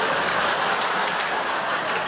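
A theatre audience applauding and laughing in a steady wash of clapping that eases off slightly toward the end.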